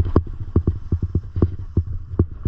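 Skis clattering over firm, uneven snow: an irregular run of sharp knocks, about five a second, over a steady low rumble of wind on the microphone.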